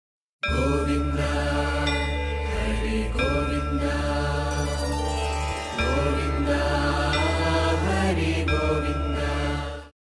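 Devotional intro music: a chanted mantra over a steady low drone. It starts about half a second in and cuts off abruptly just before the end.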